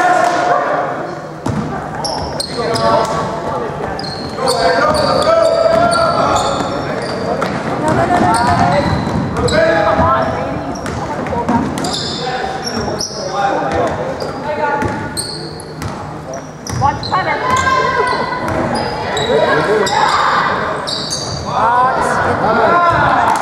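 Game sounds in an echoing gymnasium: a basketball bouncing on the hardwood court amid players' and spectators' voices calling out throughout.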